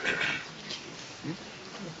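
A few scattered claps and faint audience noises as applause dies away in the hall, with a brief vocal-like sound near the middle.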